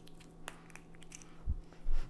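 A few faint clicks and a soft low thump of small objects being handled on a counter, over a faint steady hum.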